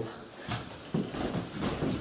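Quiet, indistinct voices in a small room, in short broken snatches, with a brief click about half a second in.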